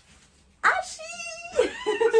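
A baby's voice: after a brief lull, a sudden high-pitched drawn-out wail starts about half a second in and holds steady for about a second, then a second call rises in pitch near the end.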